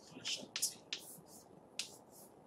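Chalk writing on a blackboard: about five short, sharp ticking strokes as symbols are written.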